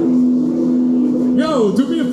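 A single sustained electric guitar note rings out over the PA as the band's song ends, then a voice comes in over it about a second and a half in.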